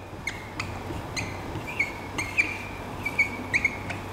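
Dry-erase marker squeaking on a whiteboard as characters are written: a string of short high squeaks, one per stroke, with light taps as the tip meets the board.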